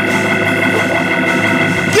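An organ holding a steady chord between sung phrases of gospel preaching.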